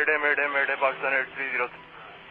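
A pilot's mayday call over aviation VHF radio: a man's voice, thin and cut off in the highs, calling "mayday" repeatedly, fading out near the end.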